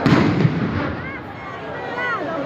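A single loud bang that rumbles and dies away over about half a second, followed by voices.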